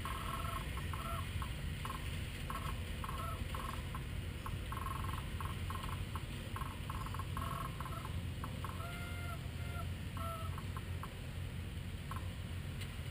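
Birds calling: short pitched calls, scattered irregularly and repeating all through, over a steady low rumble.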